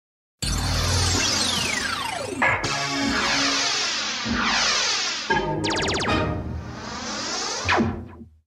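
Synthesizer logo jingle for the Tycoon Home Video ident. It starts about half a second in with a long falling swoop and sweeping high tones. Sharp hits come at about two and a half, four and a quarter and five and a quarter seconds, a shimmering run follows, and it closes on a final hit near the end.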